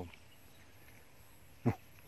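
Near silence, then a single brief, sharp sound with a quickly falling pitch about three-quarters of the way through, as a frog jumps.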